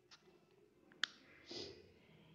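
A single sharp click about a second in, then a short soft breathy sound, over faint room tone.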